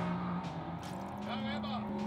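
A vehicle engine hums steadily at one low pitch, with faint voices in the background.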